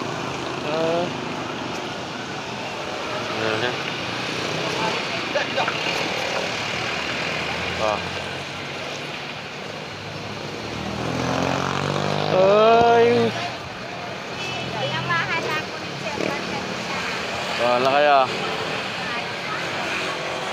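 Busy street traffic running steadily, with a motor vehicle's engine coming close and passing about eleven to thirteen seconds in. People's voices call out over it in short bursts several times, loudest at the moment the vehicle passes.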